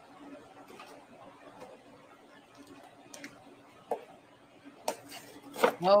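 Faint kitchen room tone with a low steady hum and a few small clicks and taps of things being handled on a counter, with a sharper click about five seconds in. A woman's voice breaks in with "Oh" near the end.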